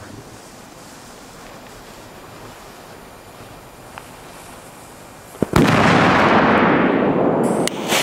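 Firework going off outdoors: after a quiet stretch, a sharp crack about five and a half seconds in, then about two seconds of loud rushing noise. This ends in another crack, and a further loud burst comes at the very end.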